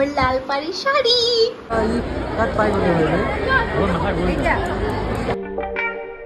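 A woman speaking briefly, then several people talking at once over background noise; plucked-guitar background music cuts in near the end.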